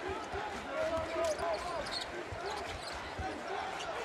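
Game sound of a basketball being dribbled on a hardwood court, a run of low thumps, over general arena noise.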